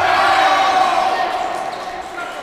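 A loud, drawn-out shout, held and fading over about a second and a half.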